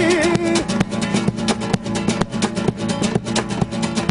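Acoustic guitar played in a flamenco rumba style: fast, even rhythmic strumming. A sung line in Spanish ends about half a second in, leaving the guitar alone.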